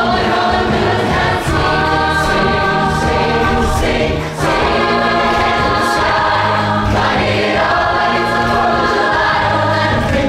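A large show choir singing in harmony, holding chords over a steady low bass, with two brief breaks in the first half.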